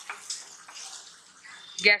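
Tomato purée and spice masala sizzling in hot oil in a non-stick kadai, a steady hiss as it is fried down until the oil starts to separate.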